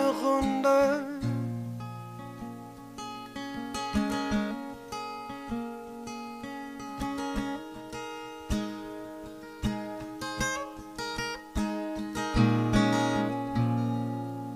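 Solo steel-string acoustic guitar playing the instrumental close of the song: picked single notes and chords ringing over a held low bass note, then a fuller strummed chord near the end that is left to ring and fade.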